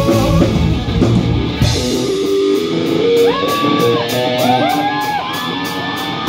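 Live rock band: full band with drums and bass for the first two seconds. Then the low end drops out and an electric guitar plays a lick with string bends over a steady hi-hat, about three ticks a second.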